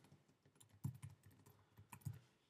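Faint typing on a computer keyboard: a quick, irregular run of keystrokes as a file name is typed in.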